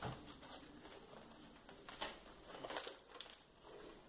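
Faint, scattered crinkling of a sheet of self-adhesive contact paper being handled as its backing is peeled back.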